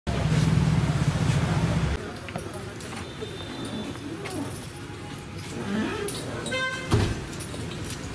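Street ambience with vehicle noise: a loud low rumble that cuts off about two seconds in, then traffic noise and voices, with a short horn toot and a thump near the end.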